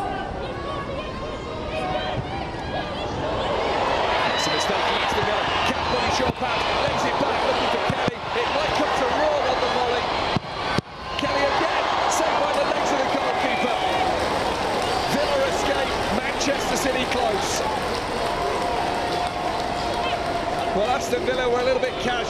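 Football stadium crowd noise, many voices calling and shouting at once, louder from about four seconds in as play reaches the penalty area. Occasional dull thuds of the ball being kicked.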